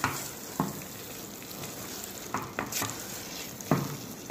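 Wooden spatula stirring prawns and masala in a pressure cooker pot over a steady sizzle, with a few short scrapes against the pot.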